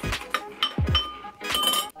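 Metal spoon clinking against a cereal bowl several times, a few of the clinks ringing briefly.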